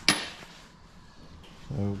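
A single sharp metallic clink with a brief high ring, as steel bolts are set down on a painted steel truck bumper.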